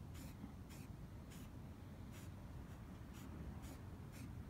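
Aerosol can of white matte primer sprayed in short squirts onto a plastic decoy: about seven brief, faint hisses, roughly one every half second.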